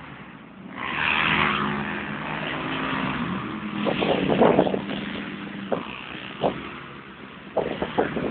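ATV engine revving as the four-wheeler drives through mud and passes close by, loudest about four seconds in.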